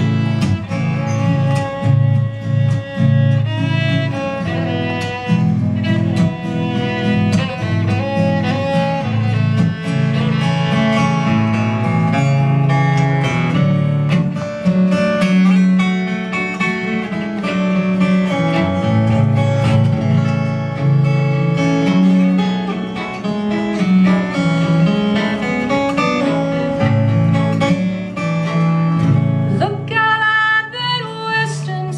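Live acoustic fiddle playing a melodic instrumental solo over strummed acoustic guitar accompaniment, in a country-blues style.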